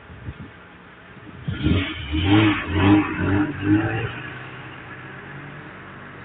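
Heavy dump truck's diesel engine passing close by, loud for a couple of seconds from about one and a half seconds in, pulsing a few times as it goes, then fading to steady road noise.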